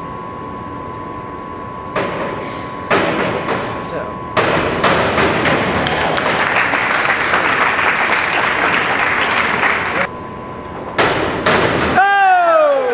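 Springboard thuds during a dive, then the diver's splash, with crowd voices echoing in an indoor pool hall. A thin steady hum runs through the first few seconds.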